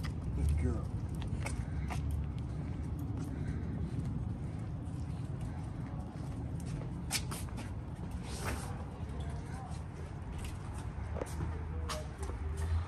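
Walking sounds on pavement over a steady low rumble, with a few scattered light clicks.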